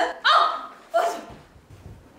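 Short, high-pitched vocal exclamations from young women's voices: a brief call at the start and another quick burst about a second in, then quieter room sound.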